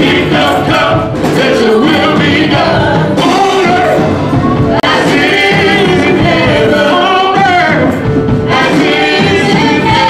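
Live gospel praise and worship music: a man sings lead into a microphone over accompaniment and other voices. The sound drops out for a split second about halfway.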